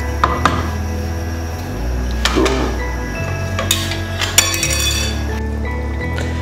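A spoon stirring curry in a metal cooking pot, clinking against the pot's side a handful of times, over background music with a steady bass line.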